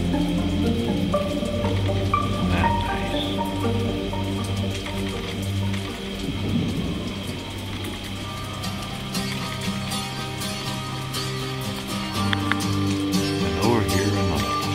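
Background music of held, slowly changing notes over a low steady drone, with a faint crackling, rain-like texture woven through it.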